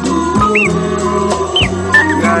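Instrumental hip-hop beat with no rapping: sustained bass and chord notes, with a short high chirp-like pitch glide that rises and falls about once a second.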